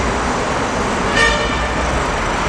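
Busy road traffic running steadily, with one short vehicle horn toot a little over a second in.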